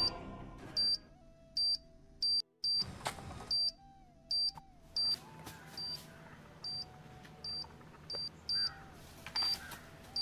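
Repeated short, high-pitched electronic beeps, about one to two a second, a sound effect for an armed landmine that has been stepped on, over soft background music.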